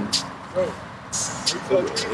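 A man's voice in a hesitant pause: short mumbled syllables and breaths, with a few soft hissy bursts, over a low steady outdoor rumble.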